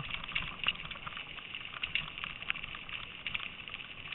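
Bicycle tyres rolling over a gravel trail: a steady crunching hiss with many small scattered clicks of stones, over a low rumble.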